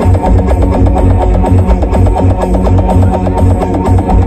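Very loud electronic dance music played through stacked outdoor sound-system speaker towers, with a heavy, pulsing bass beat.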